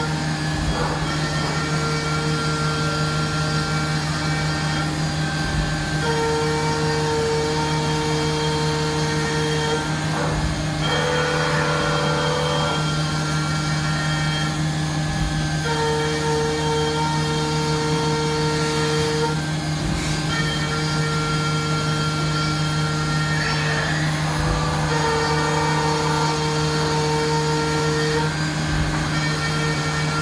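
1996 FADAL VMC 4020 CNC mill's spindle running steadily at 10,000 rpm while a 3-flute end mill faces off a metal block at 150 inches a minute, under coolant spray. A higher cutting tone comes and goes in passes of a few seconds as the cutter moves into and out of the work.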